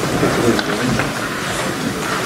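Press camera shutters clicking a few times over a low murmur of voices and rustling.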